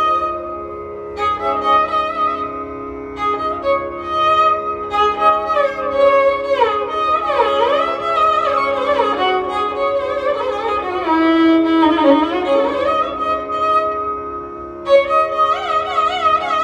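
Carnatic violin playing a solo melodic passage full of sliding ornaments (gamakas), in phrases with short pauses between them, over the steady drone of an electronic tanpura.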